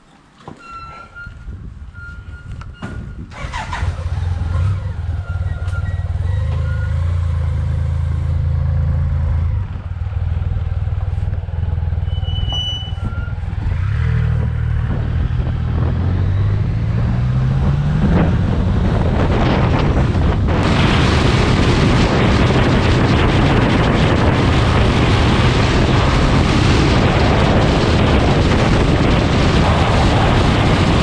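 A BMW K-series motorcycle engine starts about three seconds in and runs with a steady low note, then revs climb as the bike pulls away and gathers speed. From about twenty seconds in, heavy wind rush on the helmet-mounted microphone at road speed covers the engine.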